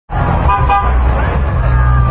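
Busy street traffic: vehicle engines running steadily, with two short car-horn toots about half a second in, over the voices of people on the street.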